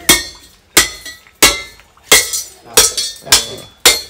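A bell-metal bangle being struck with something metal: seven sharp clinks about two-thirds of a second apart, each ringing briefly with a clear bright tone.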